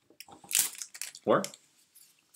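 A short rustle of a deck of board-game cards being handled and slid between hands, with one spoken word just after.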